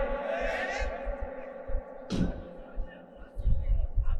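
A pause in a man's sermon over a public-address system. His last words ring away through the loudspeakers, a short hiss comes about two seconds in, and irregular low thumps and rumble come through the open microphones.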